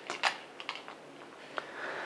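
A few light plastic clicks and taps as a small toy helicopter model is handled and set down on paper on a table, with a soft rustle near the end.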